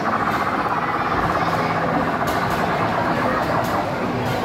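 Steady din of an indoor amusement arcade: game machines running with a low hum under chatter.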